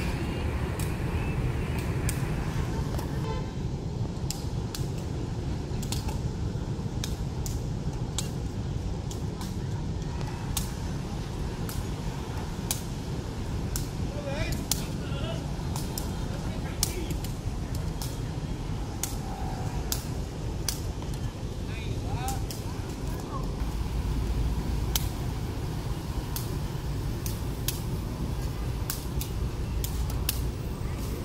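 A shuttlecock is kicked back and forth in a đá cầu rally: sharp taps of foot on shuttlecock, roughly one a second. Under them runs the steady rumble of road traffic.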